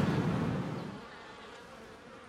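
Faint outdoor background noise that fades down over the first second to a low steady hiss.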